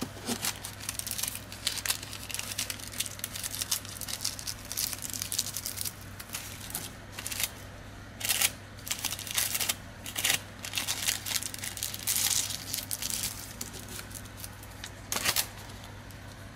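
Wax paper crinkling and rustling in irregular bursts as a bar of soap is folded into it by gloved hands, over a steady low hum.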